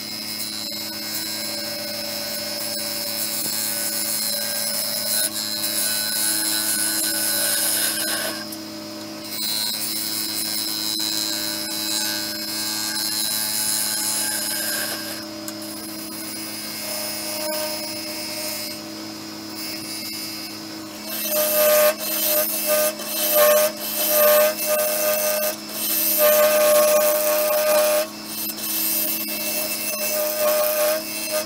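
Nova Galaxi DVR wood lathe running with a steady hum while a bowl gouge cuts the bottom of a spinning madrone-and-epoxy bowl, the shavings hissing off the tool. About two-thirds of the way through, the cutting breaks into short repeated passes.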